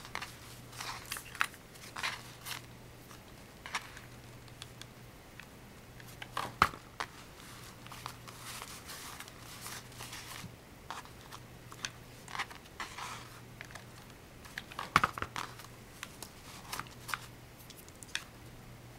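Chipboard and paper being handled, folded and pressed down on a cutting mat: scattered rustles and light taps, with two sharper knocks, about six and a half seconds in and again near fifteen seconds.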